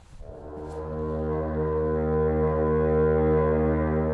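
A deep horn sounding one long, steady low note rich in overtones, swelling in over the first second and then holding.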